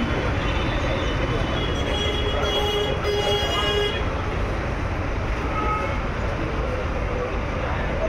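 Steady street traffic noise, with a vehicle horn sounding for just over a second a few seconds in.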